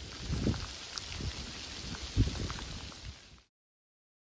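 Wind buffeting a handheld phone microphone, with low thumps and rustling from footsteps through dry leaf litter; the loudest thump comes about two seconds in. The sound cuts off abruptly at an edit, leaving silence for the last half second.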